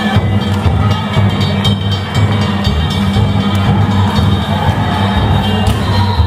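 Danjiri hayashi festival music: a deep drum pulsing under rapid strikes of small hand gongs (kane), with steady high held tones above. It cuts off sharply near the end.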